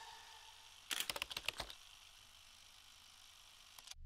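A brief flurry of sharp clicks, a quick edited sound effect over the title card, about a second in; the rest is near silence apart from a faint fading tail of music.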